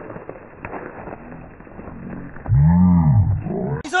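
Faint clicks and rattles from a mountain bike climbing over roots and rocks on a dirt trail. About two and a half seconds in, this gives way to a man's low, drawn-out vocal groan that rises and then falls in pitch, lasting about a second and louder than anything else here.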